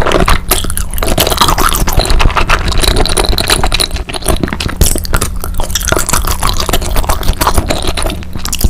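Close-miked chewing of raw salmon sashimi and rice: a dense run of small wet clicks and smacks from the mouth.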